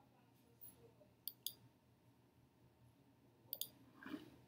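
Two pairs of quick computer mouse clicks, one about a second in and one near the end, with near silence between them.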